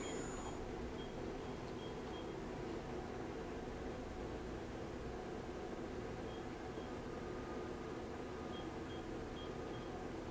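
Spindle of a 1989 Matsuura MC-510V vertical machining center running steadily at about 5,000 RPM: a quiet, even hum with faint high tones.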